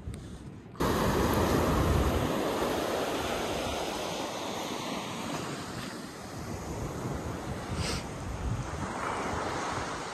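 Ocean surf breaking and washing up a pebble beach, with wind buffeting the microphone. The sound starts abruptly about a second in.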